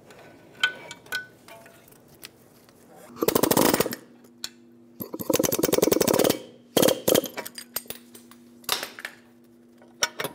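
Pneumatic air hammer rattling against the CV axle end in the wheel hub in three bursts, the second one longest, driving the axle splines loose so it can be pulled out of the knuckle. A few single metal clanks from the knuckle and hub come before and after the bursts.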